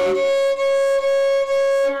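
Violin playing C-sharp with the second finger on the A string, the same note bowed in about four even strokes.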